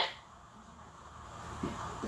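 Faint handling noise from a powder compact held and worked in the hands, growing a little louder toward the end.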